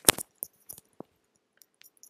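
Handling noise on a headset microphone being moved: a quick cluster of sharp clicks and knocks at the start, then scattered fainter clicks and ticks.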